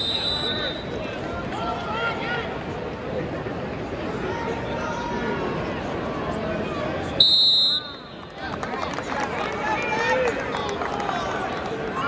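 Arena crowd noise with a hum of voices. A short shrill referee's whistle sounds at the start, and a louder blast comes about seven seconds in, signalling the end of the first period.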